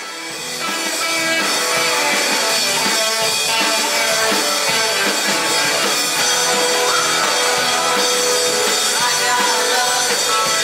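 Live rock band playing: drum kit, distorted electric guitars and bass, with a lead vocal. The sound swells back in after a brief dip at the start and then holds steady and loud.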